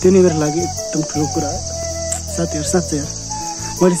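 A steady, high-pitched chorus of insects runs unbroken under a man's voice.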